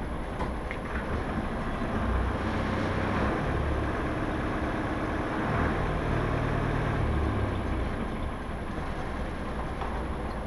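An engine running with a low, steady rumble that grows louder and fuller from about two seconds in and eases off after about seven and a half seconds.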